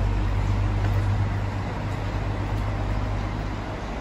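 Low engine rumble of a nearby road vehicle over outdoor traffic noise, the rumble fading about a second and a half in.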